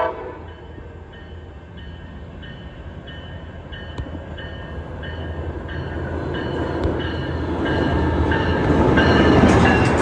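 Siemens Charger SC-44 diesel-electric locomotive pulling into the station. Its horn cuts off at the start, then its bell rings steadily, a little under two strikes a second. Engine and wheel rumble grow louder until the locomotive passes close near the end.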